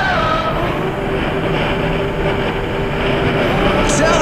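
Bajaj Pulsar RS200's single-cylinder engine running at a steady cruising speed, with road and wind noise, as the bike passes a car.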